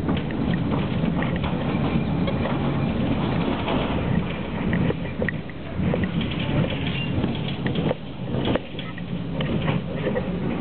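Tram running along its rails, heard from inside the car: a steady rumble of motors and wheels, with scattered clicks and knocks from the track in the second half.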